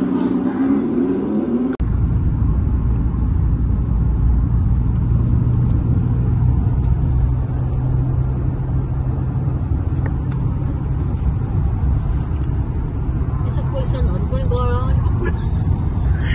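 Steady low drone of a car travelling at motorway speed, heard from inside the cabin: engine and tyre road noise. It starts abruptly about two seconds in.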